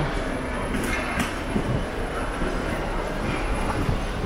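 Steady rumble of a wheeled suitcase rolling over a hard tiled floor, over the general noise of a busy hall.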